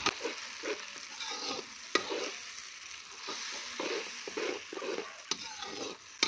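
Tomato paste sizzling as it fries in hot oil in a kadhai, stirred with a steel ladle that scrapes and clinks against the pan. There are a few sharp clinks, the loudest at the very start and about two seconds in.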